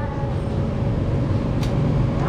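Steady low rumbling background noise, with one sharp click about one and a half seconds in.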